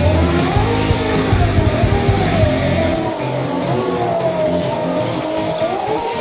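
An engine-like revving sound that rises and falls in pitch over and over, as a drifting car's throttle is worked, with tyre-squeal noise, over background music with a steady beat.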